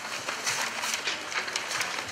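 Paper script pages and card signs rustling and crinkling as they are handled, in a few short scratchy bursts, over faint background murmur.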